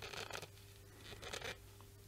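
Razor blade scraping and shaving a thin wood shim glued into a filled fret slot on a guitar neck: a few short, faint scraping strokes, near the start and again about a second and a half in.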